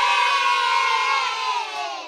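A crowd cheering and shouting together in one long, held cheer that fades out near the end.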